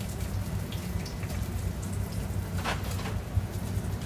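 Restaurant kitchen background: a steady low hum of kitchen equipment under a faint crackle, with a few small clicks and one brief clatter about two-thirds of the way through.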